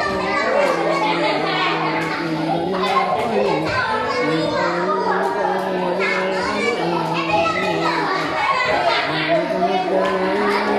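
A man chanting Quran recitation in Arabic in long, held, melodic notes that step up and down in pitch.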